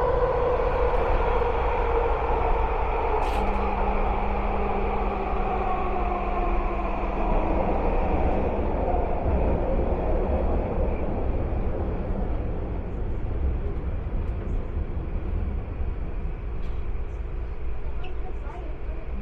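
Vancouver SkyTrain car heard from inside: the steady rumble of the running train, with a motor whine that slowly falls in pitch over the first several seconds and a low steady hum that comes in a few seconds in.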